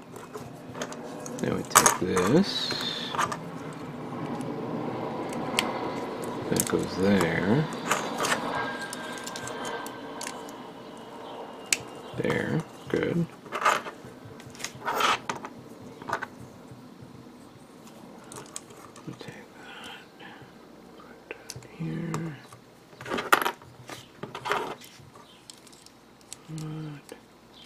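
Small plastic model-kit parts of a Bandai G-Frame Freedom Gundam being handled and pressed together: sharp clicks and snaps scattered through, several close together in the middle, with rustling handling noise in between.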